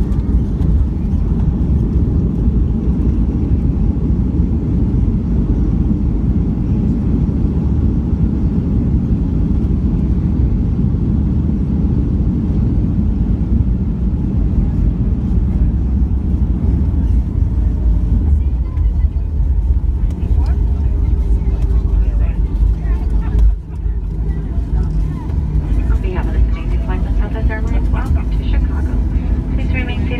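Cabin noise of a Boeing 737 on its landing rollout: a loud, steady rumble from the engines and the wheels on the runway with the spoilers deployed. As the jet slows, the rumble eases a little and steady engine tones come through near the end.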